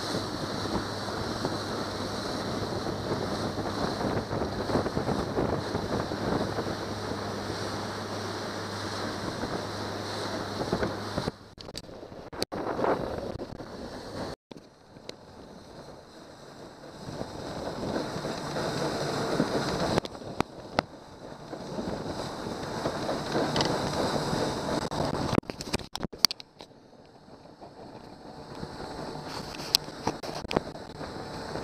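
A 70-horsepower outboard motor running a small boat at speed, with wind buffeting the microphone and water rushing and splashing in the wake. The sound cuts out sharply a few times around the middle and again near the end.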